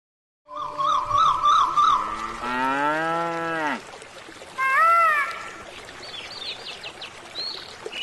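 A cow mooing: one long low moo that rises and then drops away, followed by a shorter, higher call, with small birds chirping. It opens with a warbling high tone.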